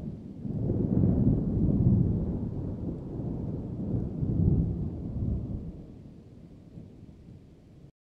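A low rolling rumble, like distant thunder, that builds over the first two seconds, swells again about halfway through and then fades out.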